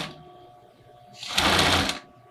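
Pfaff sewing machine sewing a short run of straight stitch, starting a little over a second in and stopping before the end; the last instant of an earlier run is heard at the very start.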